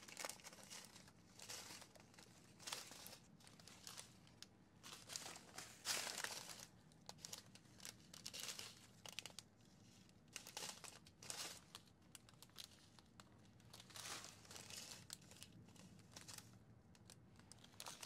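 Faint crinkling of small plastic bags of diamond painting drills and their plastic wrapping being handled, in short irregular rustles.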